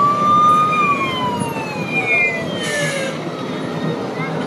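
Siren sound effect from a Lego fire station model: a single wailing tone that starts suddenly, holds for under a second, then falls slowly in pitch over about two seconds.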